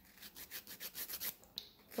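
A nail file rubbing across gel fingernails in quick, short, repeated strokes as they are shaped; the strokes are faint and come several times a second.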